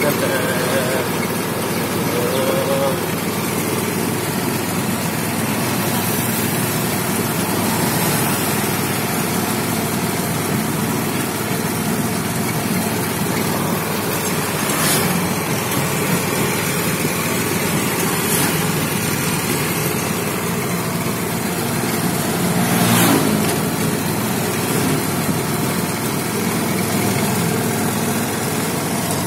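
Continuous rumble of a moving becak ride, heard from the passenger seat. There is a sharp knock about fifteen seconds in and a louder swell about twenty-three seconds in.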